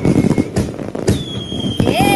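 Fireworks sound effect: a run of crackling pops and bangs, with a high steady whistle through the second half.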